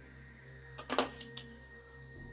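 Yogurt being poured from a plastic tub into a plastic Ninja blender jar: two short, sudden sounds close together just under a second in, over a faint steady low hum.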